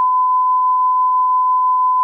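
A steady, loud 1 kHz censor bleep: a single pure tone edited over speech to blank out something said.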